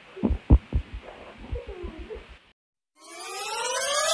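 A woman sobbing into a towel, with several low thumps in the first second. The sound cuts out about two and a half seconds in, then a rising electronic synth sweep builds toward the end.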